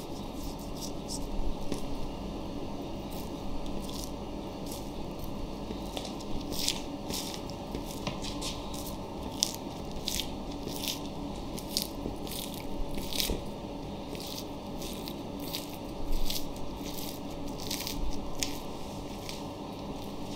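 Chef's knife slicing the fat cap off a whole beef sirloin: irregular short, crisp strokes as the blade cuts through fat and sinew, over a steady low background hum.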